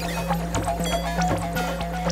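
Electronic music from modular synthesizers: a steady low drone under a busy pattern of clicks and short pitched blips.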